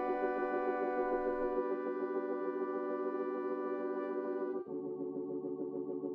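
Intro of a smooth soul-style hip-hop instrumental: sustained organ-like keyboard chords with no drums. About four and a half seconds in, the sound turns muffled and lower, with a quick wavering pulse.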